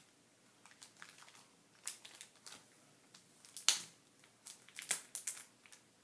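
Plastic packaging of scrapbook embellishments crinkling as the packs are picked up and shuffled, in a handful of short, sharp rustles, the loudest a little past halfway.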